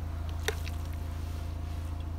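A metal spoon clinks once against a steel cooking pot about half a second in, as cooked rice is scooped out. A steady low engine hum runs throughout underneath.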